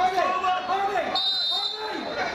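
A referee's whistle: one steady, high blast of just under a second, a little past the middle, signalling that the free kick may be taken.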